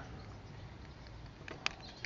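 Plastic battery case of a DJI Spark drone being pressed shut by hand: mostly quiet handling, then two small sharp clicks near the end as the cover halves snap together.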